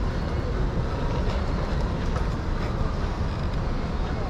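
Steady city street noise: a low, even rumble of traffic at a busy intersection.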